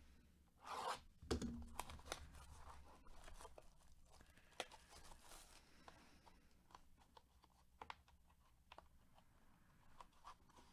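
Faint handling of a cardboard trading-card box in gloved hands as it is worked at to get it open: a short rough rustle about a second in, a light knock just after, then scattered soft taps and clicks.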